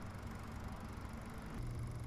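Faint, steady low hum over a soft hiss, changing slightly near the end, with no distinct events.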